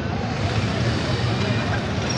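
Motorcycle engine idling close by, a steady low rumble.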